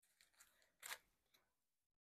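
Near silence: room tone, with one faint, short rustle about a second in.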